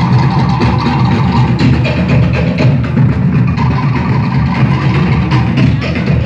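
Tahitian drum ensemble playing a fast, driving rhythm for the dance: wooden tō'ere slit drums clattering over deep drums, loud and continuous.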